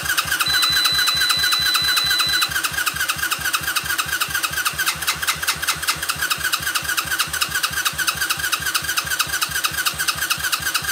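A small engine being cranked over by its electric starter in a steady, even chug that never catches or speeds up: it is failing to start. A thin high whine sits over the cranking for the first two seconds or so.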